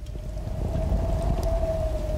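A sound-design drone: a deep rumble that swells in over the first second under one long held tone, which climbs slightly in pitch.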